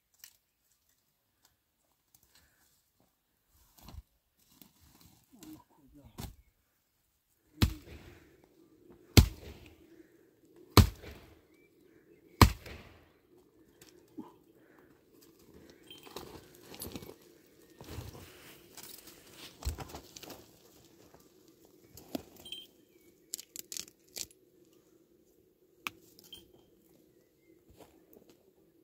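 A long-handled hand tool chopping at the woody base and roots of a dry shrub to cut firewood. Four loud chops come about a second and a half apart around a third of the way in, followed by lighter knocks and the rustle of dry branches over a steady low hum.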